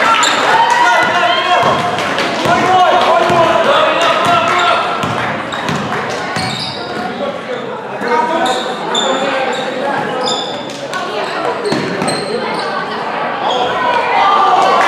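Basketball game in a gym: a ball bouncing on the hardwood floor, with repeated short strikes and high squeaks of shoes on the court, under a steady wash of crowd and player voices echoing in the hall.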